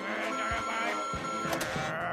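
Cartoon sound effect of a mood-meter gauge ratcheting toward angry: a steady mechanical whirring with a few sharp clicks.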